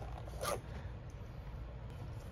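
A pen being drawn out of an elastic loop in a fabric pen case: one brief scrape about half a second in, over a steady low background hum.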